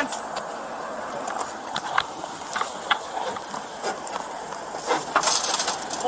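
Steady outdoor background noise with a few light clicks, and a short burst of rustling near the end.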